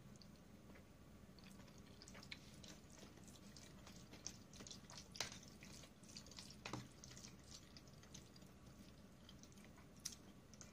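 Near silence with faint, scattered clicks and soft wet sounds of eating: chewing fettuccine and a metal fork stirring it in a plastic tray.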